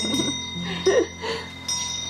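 Soft chime-like tones ringing and holding steadily, with a short murmur of a voice about halfway through.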